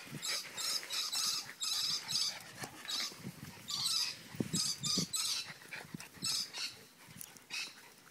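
Jack Russell terrier panting hard in quick breaths, about three a second, with a few short low sounds about halfway through; the breathing fades near the end.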